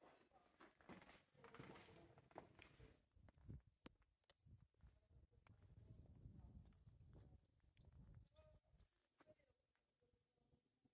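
Near silence, with faint scattered clicks and a faint low rumble.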